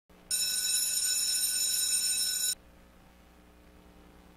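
A loud, steady, high-pitched electronic beep that lasts about two seconds and cuts off suddenly, followed by a faint low hum.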